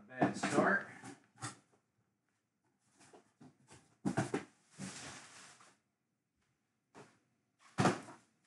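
Scattered knocks and rustles of boxes and packaging being handled on a tabletop. There is a longer rustling stretch a little after the middle and a sharp knock near the end.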